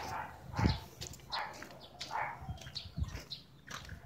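Dog barking repeatedly, a call about every second.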